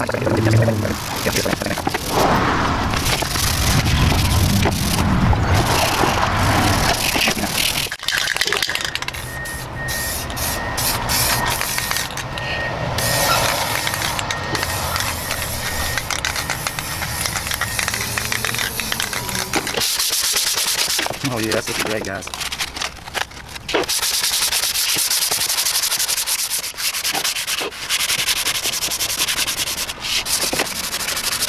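Hand sanding and rubbing on stained wooden stair-nose boards: a sanding block and gloved hands worked back and forth along the wood, with the rasping strokes densest in the last few seconds.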